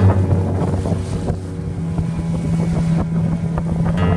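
Small motorboat's engine running at a steady low drone, with wind noise on the microphone.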